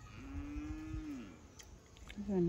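A single long, steady call lasting about a second, dropping in pitch at the end.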